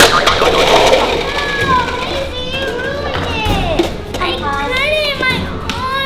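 A tall stack of plastic party cups toppling and clattering onto a wooden floor in the first second, followed by children's high, rising-and-falling wordless shrieks and cries.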